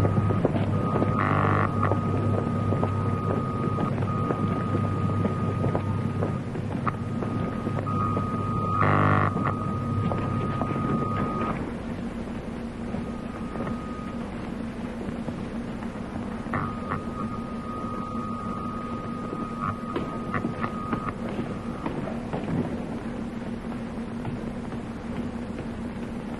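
Electrical laboratory apparatus humming, with a high steady tone that switches on and off several times and a couple of louder crackling surges early on and about nine seconds in. The low hum drops away about halfway through, leaving a slightly higher, quieter hum.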